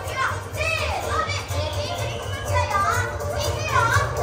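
Young children's voices shouting and squealing over background music.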